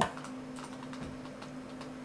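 A few faint clicks of a computer mouse as a chess move is made on screen, over a steady low hum.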